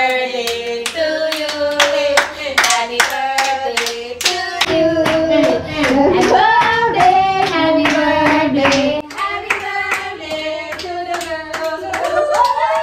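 A group of people singing a song together and clapping their hands to a steady beat.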